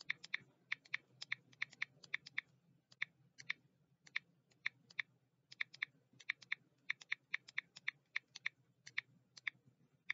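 Typing on a computer keyboard: irregular, sharp key clicks, often in quick pairs and threes, over a faint steady low hum.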